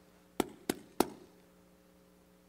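Three sharp taps about a third of a second apart, over a faint steady hum.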